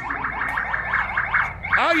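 A fast electronic siren warbling up and down about six or seven times a second, sounded from the Phillie Phanatic's quad as it drives up.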